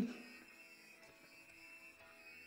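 Near silence on an isolated lead-vocal track between sung lines: a male voice's note fades out right at the start, leaving only faint, steady tones.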